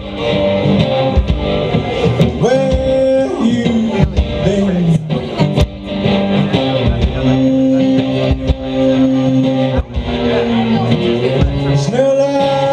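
Live one-man-band rock playing: a guitar carrying an instrumental passage, some notes gliding in pitch, over kick drum beats.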